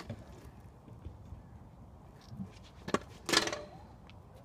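A sharp click, then a knock about three seconds in and a short loud clatter right after: a stunt scooter hitting the tarmac as the rider drops to the ground.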